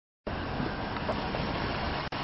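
Silence that breaks off suddenly about a quarter second in, giving way to steady outdoor noise of a car engine idling close by.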